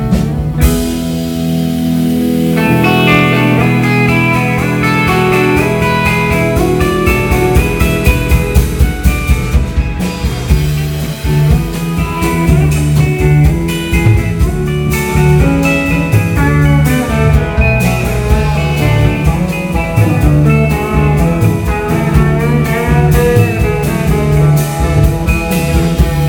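A live rock band playing an instrumental passage: electric guitars over bass, keyboard and a drum kit keeping a steady beat.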